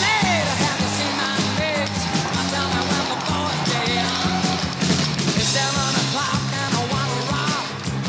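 Rock music with a steady, repeating bass line and a sung vocal.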